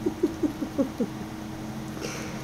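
A voice making a quick run of about six short chirps, each dropping in pitch, packed into roughly the first second, over a faint steady low hum.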